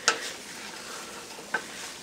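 Corned beef and cabbage sizzling in a stainless steel skillet as a wooden spatula stirs it, with two light knocks of the spatula against the pan, one at the start and one about one and a half seconds in.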